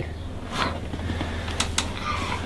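Two quick, sharp clicks about a fifth of a second apart, a little after halfway: the neck joints popping as a chiropractic neck adjustment is made. A steady low hum runs underneath.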